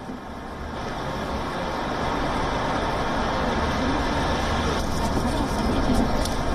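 Steady background hubbub of location sound, with faint indistinct voices in it. It swells over the first second and then holds level.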